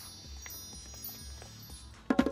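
Quiet background music of soft, sustained chime-like tones.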